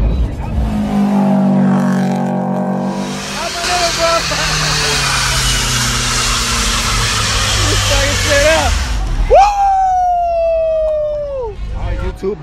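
A car doing a burnout: the engine runs hard under load, its note sinking slowly, while the spinning tires screech with a dense hiss for several seconds. About nine seconds in, a loud tone sets in suddenly and glides slowly down for about two seconds.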